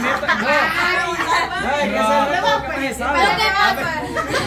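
Several people talking loudly over one another at once, a jumble of overlapping voices with no single clear speaker.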